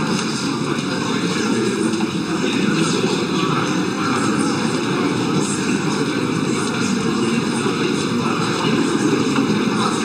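Steady rushing background noise of a press photo call, with a faint scatter of small clicks through it.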